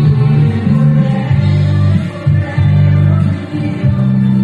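Italian pop song playing loudly, a sung vocal over a heavy bass line whose notes change every half second or so.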